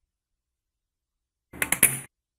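Silence, then about one and a half seconds in a short clatter of sharp clicks, loudest near the end: a spring-loaded desoldering pump (solder sucker) firing, its piston snapping back as the release button is pressed, to suck molten solder off the joint.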